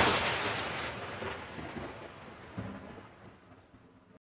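A sudden loud boom that dies away in a long rumble over about four seconds, with a smaller knock about two and a half seconds in.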